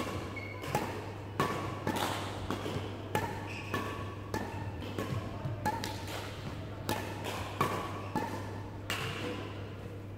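Badminton rackets hitting shuttlecocks in a quick, even rally, a sharp hit about every 0.6 seconds, with short squeaks from shoes on the court floor between some hits.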